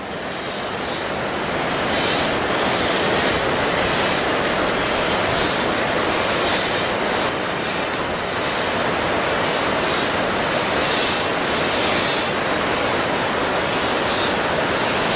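BR Standard Class 4MT 2-6-4 tank steam locomotive moving slowly as a light engine, giving a few soft, irregularly spaced hissing exhaust beats over a steady rushing background.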